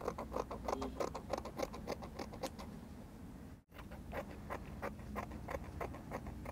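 Scissors snipping through fabric in quick, irregular cuts, with a brief drop-out a little past halfway.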